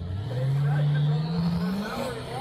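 Diesel-powered drag racer launching down the strip, its engine note climbing steadily in pitch as it accelerates away, rising faster near the end.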